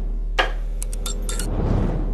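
Logo-animation sound design: a steady low electrical hum under swelling whooshes, with a quick run of sharp glassy clicks and crackles from about half a second to a second and a half in.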